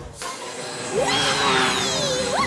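Cartoon sound effects: a whoosh over a scene-change wipe, then a small motor buzzing, its pitch rising sharply about a second in and then holding steady.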